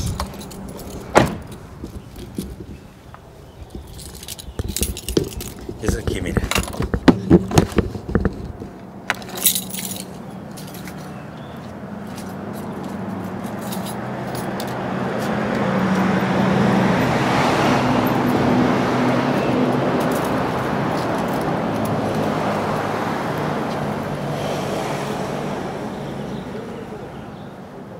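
A run of knocks, clicks and rattles in the first several seconds. Then the noise of a motor vehicle going by on the street swells to its loudest about two-thirds of the way through and slowly fades.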